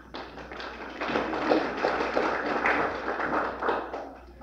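Audience applauding, swelling about a second in and fading away near the end.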